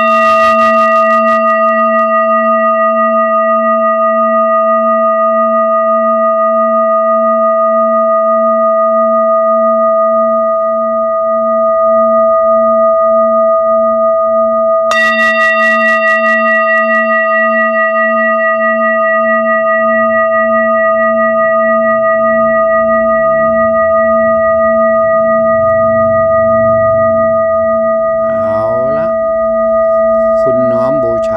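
Metal singing bowl ringing with a long sustain, its several tones held together and its lowest tone pulsing in a slow wobble. It is struck again about halfway through, which renews the ring.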